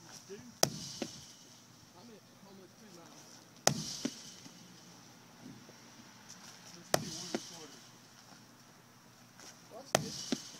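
A medicine ball slammed into a concrete wall four times, about three seconds apart, each sharp smack followed about half a second later by a softer knock as the ball comes back off the wall.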